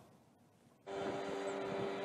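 Near silence for almost a second, then a steady background hum with a faint held tone starts suddenly and continues.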